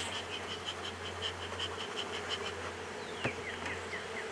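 Honey bees buzzing steadily over an open hive. Over it come a rapid, even run of high chirps through the first two and a half seconds, a single click about three seconds in, and then a few short falling chirps near the end.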